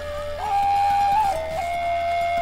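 Background music: a solo flute melody of long held notes, stepping up to a higher note about half a second in and then settling a little lower.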